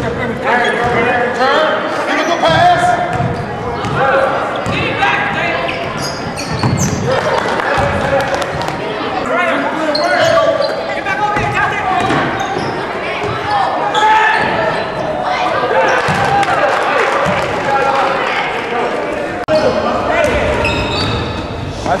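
Basketball dribbled and bounced on a hardwood gym floor, under steady overlapping chatter from spectators and players in a gymnasium.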